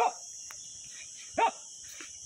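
Two short, sharp shouted calls of the Japanese count "go" (five), about a second and a half apart, marking a step in a group nunchaku kata. A steady high-pitched hiss runs underneath.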